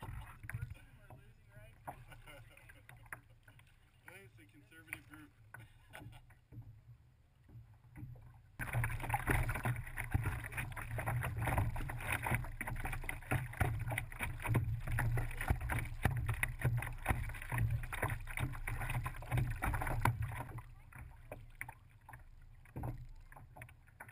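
Water splashing and sloshing against a kayak hull as it is paddled along, picked up muffled by a GoPro in its waterproof housing. It is faint at first, turns suddenly much louder about a third of the way in, and drops back near the end.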